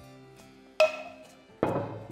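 Metal ladle and pan clanking: a sharp clink with a short ring a little under a second in, then a heavier knock as the pan is set down on the wooden table. Soft background music plays underneath.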